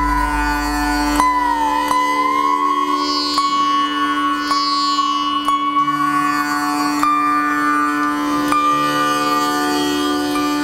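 Veena played solo in Carnatic style: a few plucked notes, each held long and bent in slow sliding glides that creep upward in pitch, over a steady drone note.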